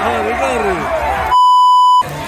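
Stadium crowd shouting and cheering, then a loud, steady, high electronic bleep tone that blots out everything else for the last half second or so and stops abruptly.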